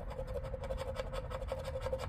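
A paper scratch-off lottery ticket being scraped with the edge of a poker-chip scratcher: a fast, continuous run of short rasping strokes as the latex coating comes off.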